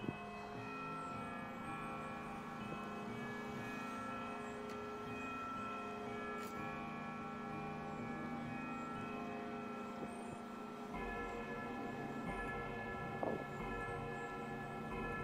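Tower bells chiming a slow tune, each struck note ringing on and overlapping the next. A fresh run of notes begins about three-quarters of the way through.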